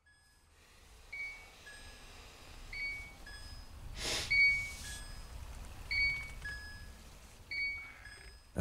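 A short two-note whistle, a higher note followed by a lower one, repeated about every second and a half, over a steady low rumble. A breathy rush of noise comes about four seconds in.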